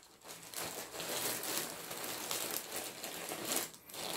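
Clear plastic bag around a pack of yarn skeins crinkling and rustling as it is handled and slid aside.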